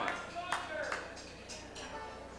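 A few scattered handclaps over indistinct voices in a hall as applause dies away.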